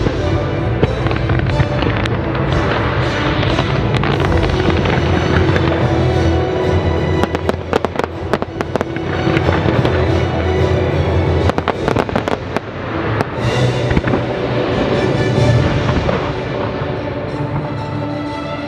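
Fireworks show: shells bursting and crackling over steady show music, with a dense cluster of sharp bangs and crackles starting about seven seconds in and another burst of them near twelve seconds.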